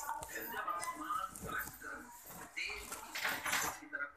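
Indistinct voices: short, bending vocal sounds with no clear words.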